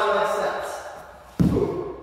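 A single dull thud on a wrestling mat about one and a half seconds in, from a wrestler's hard outside step as he drives in under his partner's arm for a duck under.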